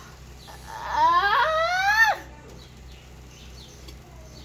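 A young woman's long wail, rising steadily in pitch for about a second and a half before breaking off: a pained cry at the burn of Tabasco-spiced noodles.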